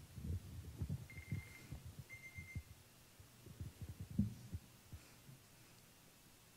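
Irregular muffled low thumps and knocks in a room, fading out near the end, with two brief faint high tones about one and two seconds in.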